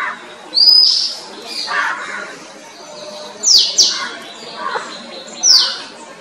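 Male oriental magpie-robin singing: a string of loud, clear whistled notes with short pauses between them, several sliding quickly downward in pitch.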